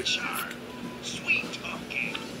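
Cartoon character's whispered vocal sounds without clear words, played from a TV speaker.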